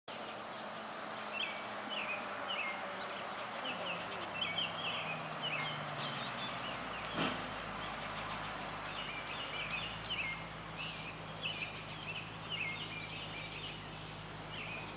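Songbirds singing in short chirping phrases, repeated over and over, with a single sharp click about seven seconds in.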